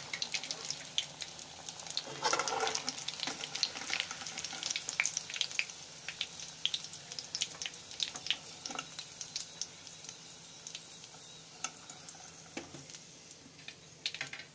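Battered chicken pakora deep-frying in hot oil in a kadhai: a steady sizzle with dense crackling pops, thinning out near the end as the pieces are lifted out with a slotted spoon.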